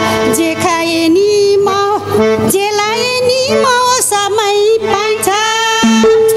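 A woman singing a song with ornamented, wavering held notes over band accompaniment, amplified through stage loudspeakers.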